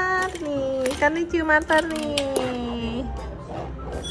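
A voice making long, wordless sounds: held notes, then slow downward slides in pitch.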